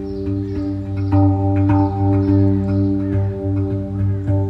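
Meditation music: a steady low drone with struck, ringing notes of a steel pandrum (handpan-style tongue drum) sounding over it.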